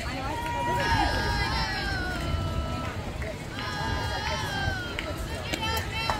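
Several high voices yelling long drawn-out calls, two stretches of shouting one after the other, with a few sharp knocks or claps near the end.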